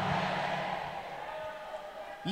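Echo of a man's amplified voice through a hall PA, fading away smoothly over about a second and a half and leaving faint room noise.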